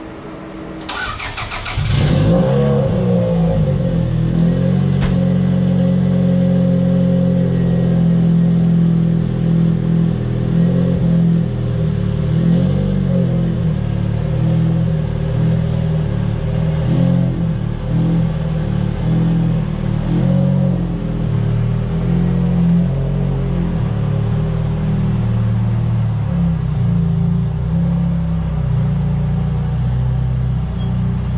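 Second-generation Toyota MR2 (SW20) engine cranked by the starter for about a second and catching about two seconds in, then idling steadily. This is its first start after sitting unused for a couple of months. The idle grows slightly quieter near the end as the car backs away.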